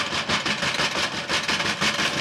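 Rapid, continuous pounding and rattling on a frosted-glass sliding door.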